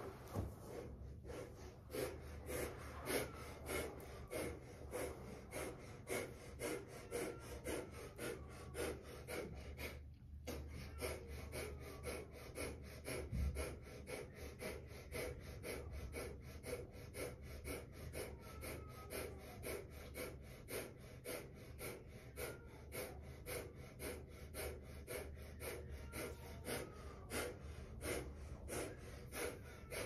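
A woman's rapid, forceful exhalations through the nose in yogic breath of fire, each pushed out by a quick pull of the belly toward the spine, about two to three a second, with a brief pause about ten seconds in.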